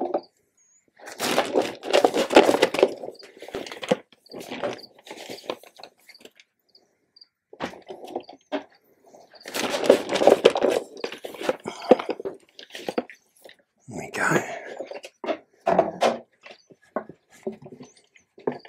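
Potting compost being scooped with a plastic cup and poured into a glass terrarium, heard as several bursts of rustling and pattering with a few knocks, separated by quiet gaps.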